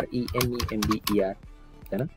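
Computer keyboard typing, a run of quick key clicks over the first second or so, mixed with a person talking; near the end the talk pauses and only a few faint clicks remain.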